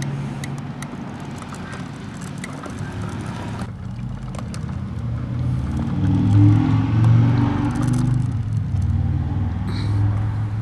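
A heavy truck's diesel engine running, then revving harder about six to seven seconds in. Small clicks sound over it in the first few seconds.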